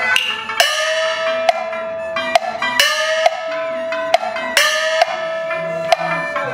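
Cantonese opera accompaniment: long held high melodic notes, each sliding up into its pitch, punctuated by irregular sharp wood-block knocks.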